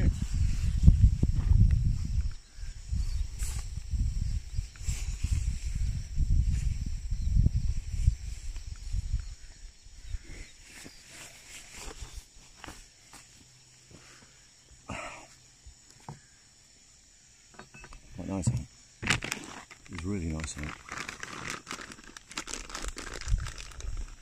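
A light shell jacket rustling and crinkling as it is pulled on and tugged straight. Loudest in the first few seconds with heavy low rumbling, then scattered softer rustles and clicks, with louder handling noise again near the end.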